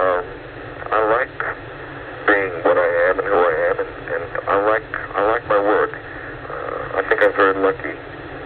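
Speech only: a voice talking over a telephone line on a radio call-in broadcast, in phrases with short pauses between them.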